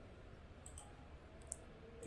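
Near silence: faint room tone with a couple of faint computer clicks, the clearer one about a second and a half in, as the text cursor is moved to a new line.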